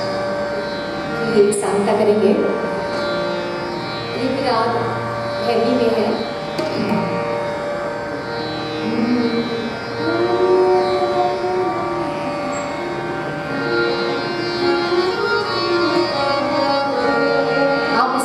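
Female Hindustani classical vocalist singing long, gliding melismatic phrases over a sustained harmonium drone, with a few tabla strokes.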